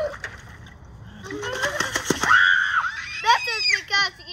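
Water splashing in a galvanized metal washtub as small children reach in for apples, with children's high-pitched squeals and voices over it, loudest in the second half.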